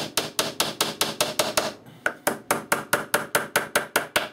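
Small hammer tapping small nails into the thin wooden panels of a box: a quick, even run of light strikes, about five a second, with a brief pause about two seconds in.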